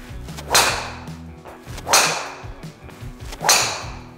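Three golf driver shots, about a second and a half apart: each a sudden swishing strike that fades quickly. Background music plays underneath.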